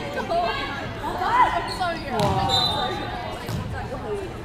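A basketball thudding on a wooden sports-hall floor during play, a couple of dull bounces, with players and spectators shouting, all echoing in the large hall.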